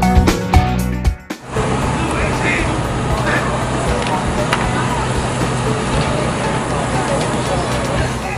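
Background music with plucked notes cuts off about a second in, followed by live game sound: a steady crowd hubbub from the stands with faint distant voices.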